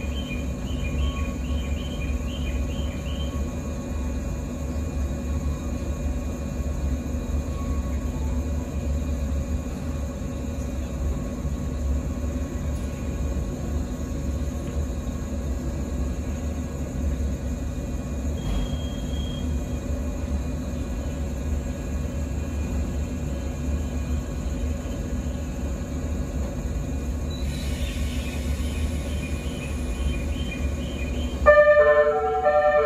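Electric train standing at a platform, its onboard equipment giving a steady low hum with a few constant tones. Brief high chirps sound near the start and near the end, and a short beep comes a little past the middle.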